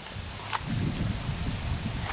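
Wind buffeting the microphone: an uneven low rumble, with one faint click about half a second in.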